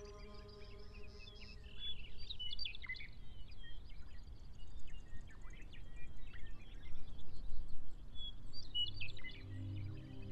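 Songbirds chirping, with many short calls scattered throughout. A sustained music chord fades out at the start, and low music tones come back in near the end.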